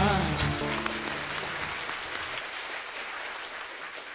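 A man's sung line and its backing music end about half a second in, giving way to audience applause that fades away.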